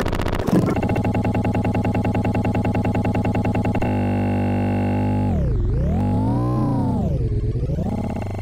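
Electronic synthesizer music: a rapidly pulsing chord for about three seconds, then a held drone whose pitch swoops down and back up twice near the end.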